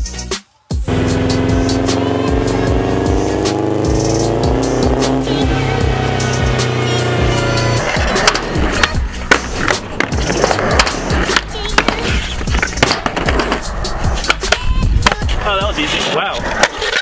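Background music, then, from about halfway, skateboard wheels rolling on concrete with sharp clacks of the board mixed in with the music.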